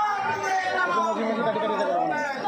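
Several people's voices talking at once in overlapping chatter.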